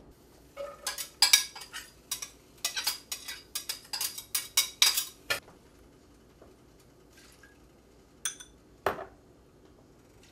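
Kitchen utensils and dishes clattering: a quick run of sharp clinks and knocks for about five seconds, then a pause, one ringing metal clink and a knock near the end as a skillet is handled on the electric stove.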